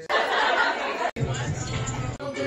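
Several voices talking over one another, indistinct. The sound cuts off abruptly about a second in and gives way to a different hubbub of overlapping chatter.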